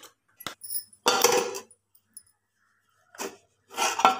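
Metal utensils clinking and scraping against an aluminium pot of thick ragi dough, in a few short ringing bursts, as the spatula is worked and a metal lid is brought onto the pot.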